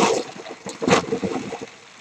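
Bubble wrap rustling and crinkling as it is handled and pulled away, in bursts: one at the start and another about a second in.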